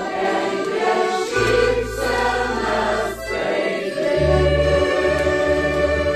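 Mixed choir of men's and women's voices singing in Lithuanian with accordion accompaniment, holding long sustained chords over low held bass notes.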